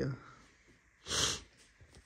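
A single short, sharp breath through the nose, a snort-like sniff lasting under half a second, close to the microphone about a second in.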